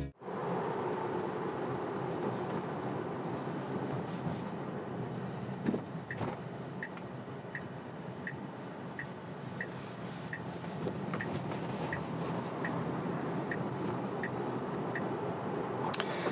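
Steady tyre and road noise inside a Tesla's cabin. From about six seconds in, the turn signal ticks evenly, about three ticks every two seconds, as the car takes a right turn on red. A single soft thump comes just before the ticking starts.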